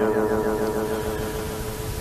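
A short pause in Pali chanting: a steady hum and hiss with a faint lingering tone, slowly fading.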